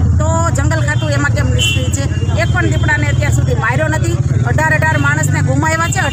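A woman speaking continuously over a steady low rumble.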